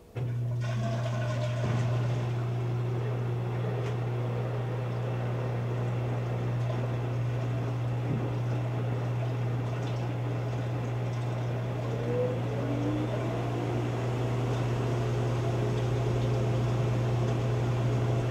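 Electrolux EFLS527UIW front-load washer moving water. At the very start, a loud steady low hum and rushing, gurgling water switch on abruptly and keep running.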